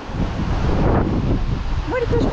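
Wind buffeting the microphone: a loud, rough, gusting rumble that rises just after the start. A voice starts near the end.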